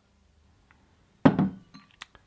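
Glass beer bottle set down on the tabletop a little past a second in: one sharp clink with a brief ringing tail.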